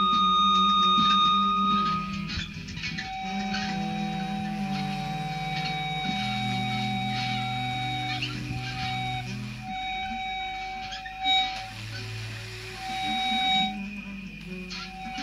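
Instrumental music from a live studio recording: long held, even tones over low notes that change step by step every second or two, with two short louder notes near the end.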